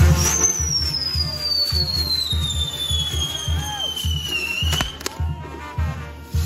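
Fireworks on a torito spraying sparks, with one long whistle that falls slowly in pitch for about four seconds, then two sharp bangs just before the end. Music with a steady bass beat plays underneath.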